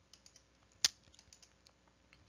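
Faint small clicks at a computer, with one sharper click a little under a second in, as a presentation slide is advanced.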